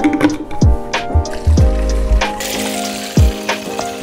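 Water running from a drinking-water faucet into a plastic squeeze bottle, a steady hiss for about a second and a half past the middle, over background music.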